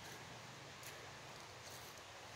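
Quiet woodland background with two faint, soft footsteps crunching on dry leaf litter, a little under a second apart.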